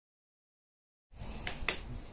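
Dead silence for about a second, then room noise comes in with two sharp clicks in quick succession.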